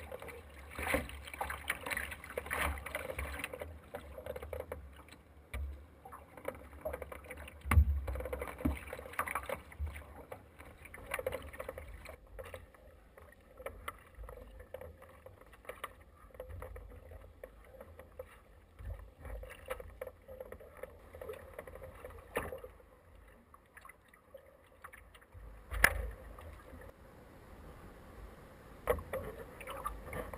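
Sea kayak moving through choppy sea: paddle blades dipping and splashing, and waves washing against the hull, with sharper slaps of water about eight seconds in and again near twenty-six seconds.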